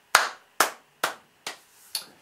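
A man clapping his hands five times, about two claps a second, the first clap loudest and the rest getting quieter.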